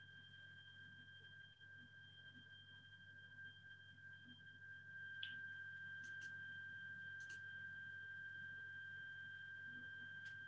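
Near silence: faint room tone with a steady high-pitched electronic whine and a low hum, and a few faint clicks in the second half.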